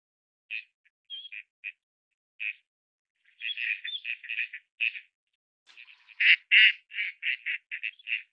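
Gadwall ducks calling: short calls, a few scattered ones at first, then a run of about seven about three seconds in, and a louder run near the end whose calls come faster and faster.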